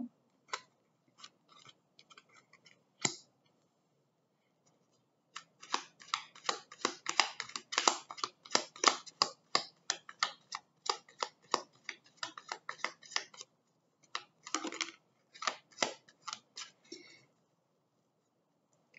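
A deck of oracle cards being shuffled by hand: a long run of quick, crisp card clicks, about four a second, with a short break and a second run near the end. A few single soft taps of cards set down on a cloth-covered table come in the first few seconds.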